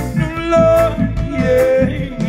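Live reggae band playing: a vocalist sings long held notes over a steady bass line, electric guitar and drum kit with regular cymbal strikes.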